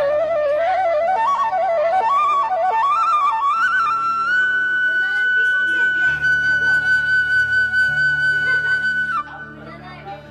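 Background music: a flute melody over a low sustained drone. The melody steps up and down, then climbs to one long held high note from about four seconds in, and the music drops away shortly before the end.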